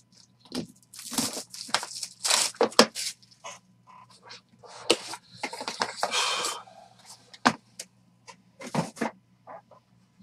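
Plastic shrink wrap crinkling and tearing as a trading-card box is unwrapped and opened, heard as a run of short crackling rustles and clicks.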